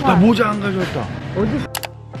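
A person talking briefly, then an abrupt drop to soft background music, with a couple of quick sharp clicks just as the music starts near the end.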